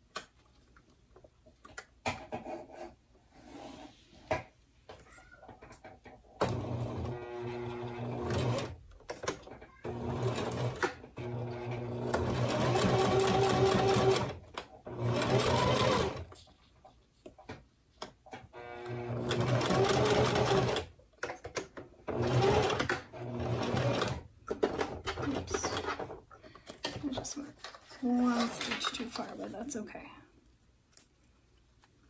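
Domestic sewing machine stitching through glitter vinyl in a series of short runs, stopping and starting about eight times. Light clicks of handling come before the first run.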